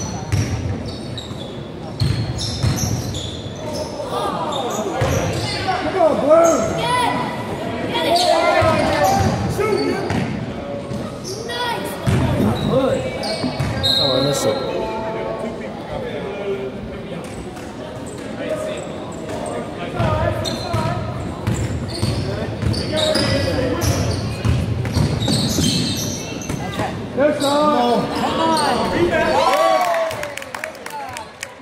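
Basketball game in a gym: a basketball dribbled on the wooden court with repeated bounces, under the calls and shouts of players and spectators.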